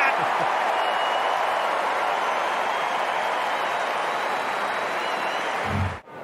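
Stadium crowd cheering and applauding a goal, a steady roar with some whistling in it. A low thump comes just before it cuts off suddenly near the end.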